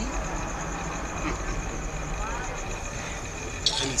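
Steady background noise, a low hum with hiss and a faint pulsing high whine, with a short laugh at the very end.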